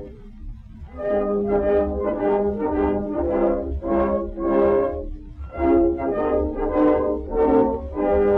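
Acoustic-era 78 rpm shellac recording of a small orchestra led by brass playing an instrumental passage between sung verses. After a brief pause it plays a melody of short, separate notes, about two or three a second, over the disc's low surface rumble.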